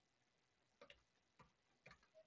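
Faint computer mouse clicks over near silence: a quick pair about a second in, a single click, then another quick pair near the end.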